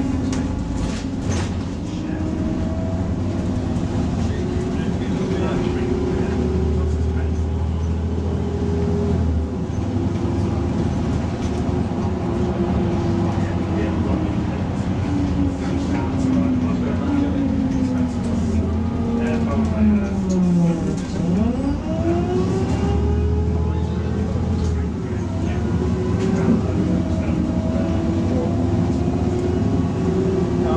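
Volvo B6LE single-deck bus's diesel engine and drivetrain heard from inside the saloon on the move, with road rumble underneath. The engine note rises, falls away steadily to a low point about two-thirds of the way through, then rises again.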